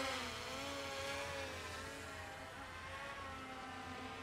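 DJI Mavic Pro quadcopter hovering high overhead, its propellers giving a faint steady hum whose pitch wavers slightly as the motors hold position.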